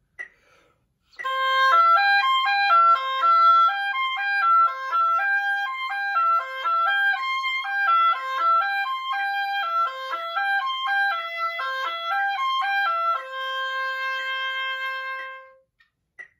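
Solo oboe playing a concert C arpeggio exercise: quick repeating figures stepping up and down the arpeggio, ending on a long held note of about two and a half seconds.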